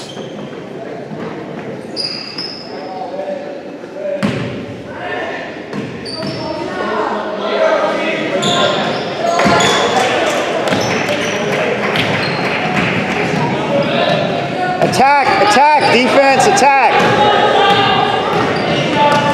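A basketball dribbled and bouncing on a hardwood gym floor during play, with sneakers squeaking in a quick run near the end. Indistinct voices echo around the gym.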